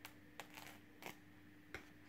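Faint handling noises from a metal steelbook case and a white paper sheet: about five light clicks and crinkles spread over two seconds.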